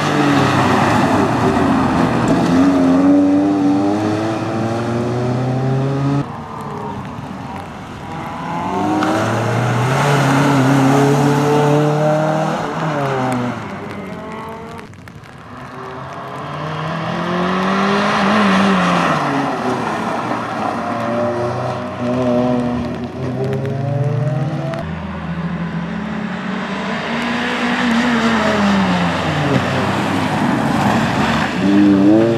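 Toyota Celica's four-cylinder engine being driven hard, its pitch rising under acceleration and falling away as it slows, several times over. Its sound swells as the car comes close and fades as it moves off.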